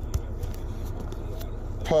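Steady low rumble in a truck cab, with a few faint clicks as the latch of a swivelling TV mount is worked by hand.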